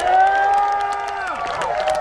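A crowd cheering and whooping, with scattered clapping. Many voices hold long calls that fall away, and the cheering swells suddenly at the start.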